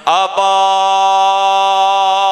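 A man's amplified voice chanting a Quranic verse in a drawn-out melodic style: a short sliding phrase, then about half a second in a long, steady held note.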